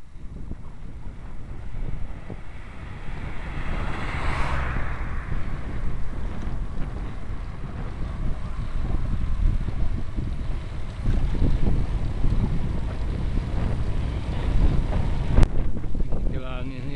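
Wind buffeting the microphone of a camera on a moving bicycle, with a steady low rumble. About four seconds in, a car passes in the oncoming lane, its tyre noise swelling and fading. A sharp click near the end.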